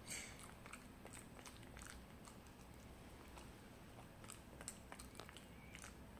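Puppy faintly chewing and nibbling bits of sweet potato off the floor: soft, irregular little clicks and smacks of its mouth, one slightly louder right at the start.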